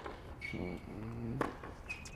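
Tennis ball struck by a racket during a baseline rally on an outdoor hard court: one sharp pop about one and a half seconds in, with two brief high squeaks around it.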